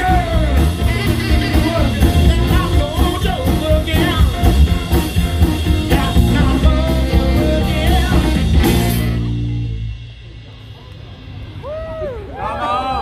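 Live rock band with saxophone, electric guitar, bass and drum kit, with vocals, playing the end of a song. The band stops about nine seconds in and the last chord dies away, and near the end voices start cheering.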